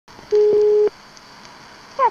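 A single steady telephone-line tone, about half a second long, followed by faint line hiss with a few light clicks as the call connects.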